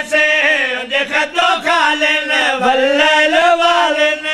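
A man's voice chanting in long, wavering melodic lines into a microphone, with notes held and bent in the style of a majlis zakir's sung recitation.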